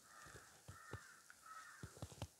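Near silence in a pause of speech, with a faint harsh bird call carrying on in the background and a few faint clicks.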